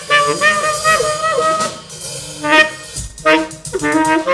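Tenor saxophone (a Selmer Mark VI) playing an improvised jazz line of held and bending notes over drums. Near the end a low drum hit and a run of cymbal and drum strokes join in on the Gretsch kit and Paiste Formula 602 cymbals.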